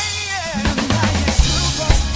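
A drum kit being played along to a pop song's recording: kick drum, snare and cymbals over the song's backing track.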